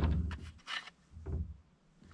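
A few short, soft scrapes and knocks as small boxes and tins are handled on a wooden cupboard shelf.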